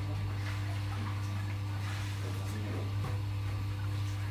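Electric potter's wheel running with a steady low hum while wet clay is shaped by hand on the spinning wheel head, with faint soft wet rubbing sounds.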